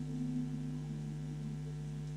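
Steady electrical hum of several held tones, the kind of mains hum picked up in a microphone's audio chain.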